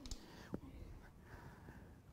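Quiet room tone with one faint click about half a second in and a faint whisper-like murmur.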